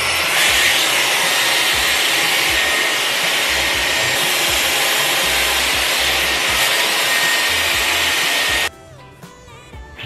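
Hot air styling brush running steadily: a loud rush of air with a thin motor whine under it, switched off suddenly near the end.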